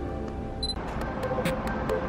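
Background music that changes to a new track just under a second in, marked by a brief high beep and a click, after which a steady beat with crisp ticking percussion runs on.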